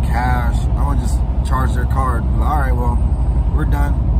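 A man talking inside a car, over the steady low rumble of the car running on the road.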